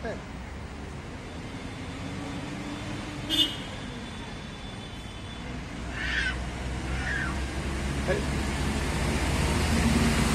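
Street background noise: a steady low rumble of traffic with faint distant voices. A short high-pitched tone comes about three and a half seconds in, and the rumble grows louder towards the end.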